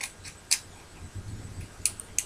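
Small sharp plastic clicks from handling a compact digital camera as an SD card is fitted into it. The loudest click comes about half a second in, with another shortly before the end.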